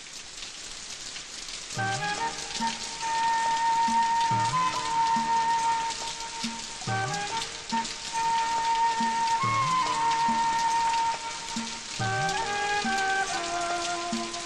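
Steady rain hiss, and about two seconds in a slow background film score begins over it: long held melody notes above a low bass note that repeats roughly every second and a half, pausing briefly twice.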